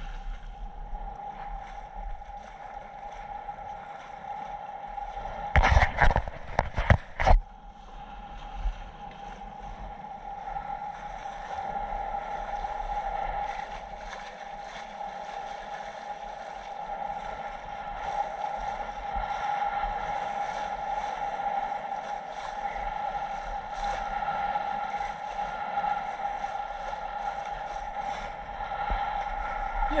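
Small boat underway, with water washing past the hull and a steady whine in the background. A few loud knocks come about six to seven seconds in.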